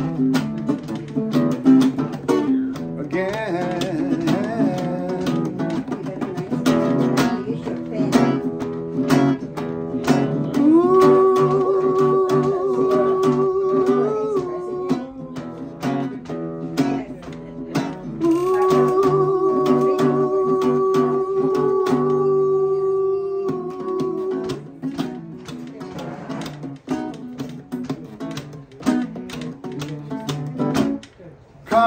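Nylon-string classical guitar with a cutaway, strummed steadily as song accompaniment. A man's voice holds two long wordless notes over it, one starting about ten seconds in and another around eighteen seconds.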